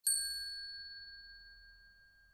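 A single high, bell-like metallic ding, struck once right at the start and left to ring, fading away slowly.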